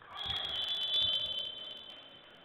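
A referee's whistle blown in one long, high blast that begins just after the start and fades away over about a second and a half.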